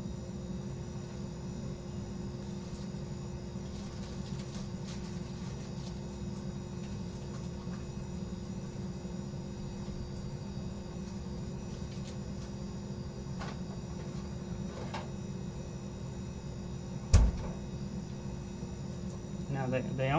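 Steady low background hum with a faint even tone above it and a few soft ticks, then one sharp knock about three seconds before the end.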